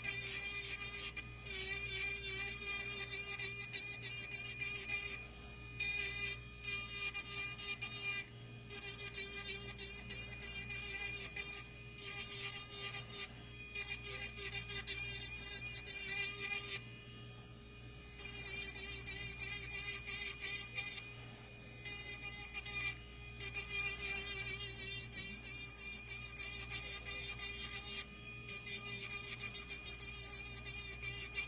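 Electric nail drill fitted with a carrot bit, run at full speed and grinding down an artificial powder nail: a steady thin motor whine under a scratchy rasp. The grinding comes in passes broken by several short pauses.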